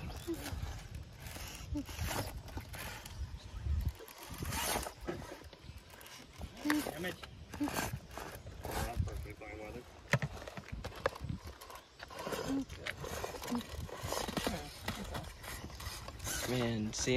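Small electric RC rock crawler working over rocks: scattered clicks and knocks of tires and chassis on stone, with a low rumble of wind on the microphone and brief laughter a couple of seconds in.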